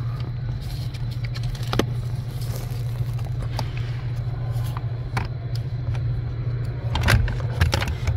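A few sharp plastic clicks and rattles, more of them near the end, as gloved hands work a Toyota air mix damper servo motor loose from the heater case under the dash. A steady low hum runs underneath.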